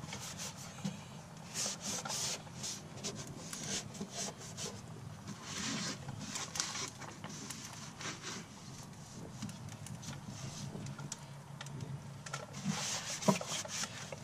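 A cloth rag wiping and scrubbing grease off the painted underbody and wheel well in irregular back-and-forth strokes, gritty from sand and rocks caught in the grime.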